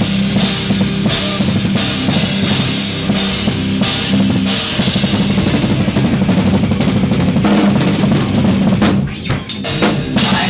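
Live band playing loud rock, driven by a drum kit with bass drum, snare and cymbals over repeating low pitched notes, with a short break about nine seconds in.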